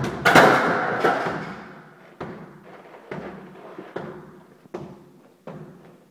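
A loud crash as the big exercise ball hits, with a rattling tail that fades over about a second, followed by a run of five fainter knocks, about one every 0.8 s, growing softer.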